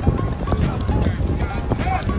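Footballs being kicked and tapped on artificial turf by many players at once, a run of irregular knocks, with young players' voices calling in the background.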